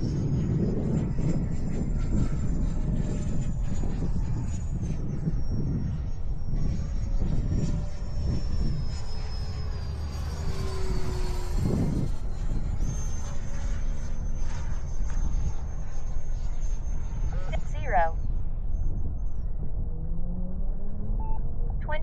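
Wind buffeting the microphone. Over it runs the thin, high whine of a radio-controlled electric ducted-fan jet in flight, its pitch stepping and sliding with throttle.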